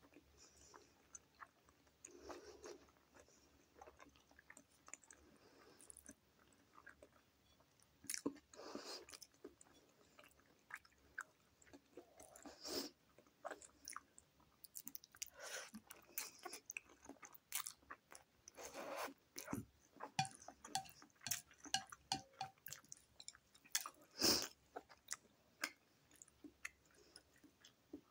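A person chewing a mouthful of egg noodles and vegetable gyoza dumplings, with irregular wet mouth smacks and clicks. One sharper knock, the loudest sound, comes near the end.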